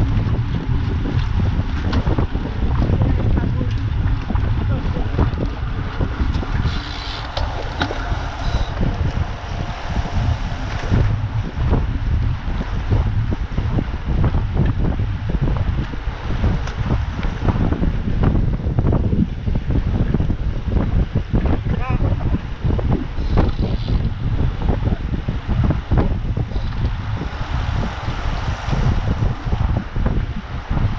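Wind buffeting the microphone of a camera riding on a moving road bike, a loud, steady low rumble with constant gusty flutter.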